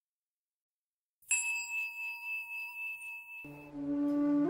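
Silence, then about a second in a meditation bell is struck once and rings out with a clear, high, slowly fading tone. Near the end, flute music begins.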